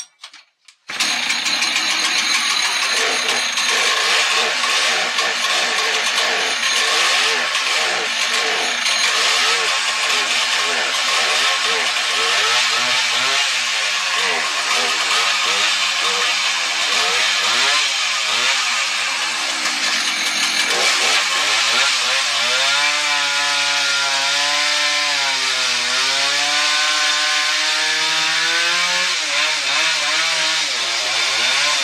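Husqvarna chainsaw pull-started, catching about a second in, then running loudly with its engine speed rising and falling as it revs and cuts into a large log. The chain is dull.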